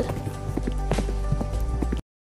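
Horse hooves clip-clopping as a sound effect: a run of short, sharp hoofbeats over steady background music.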